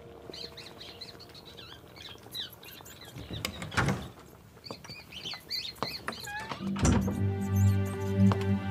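Small caged birds chirping in quick, wavering calls, with a thud about four seconds in and another just before background music with low held notes comes in near the end.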